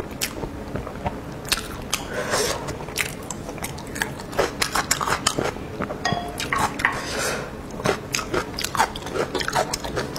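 Close-miked wet chewing and mouth smacking of a person eating soft pig brain in chili oil, with many short clicks and smacks throughout.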